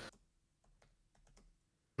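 Faint computer keyboard typing: a few soft, separate key clicks in an otherwise very quiet pause.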